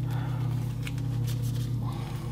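A steady low hum runs throughout, with a few faint clicks and crinkles as small plastic bags of drone propellers are handled.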